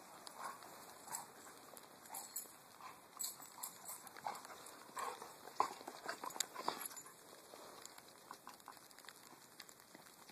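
A Labrador retriever's paws crunching in snow as it trots about: faint, irregular crunching steps, thinning out after about seven seconds.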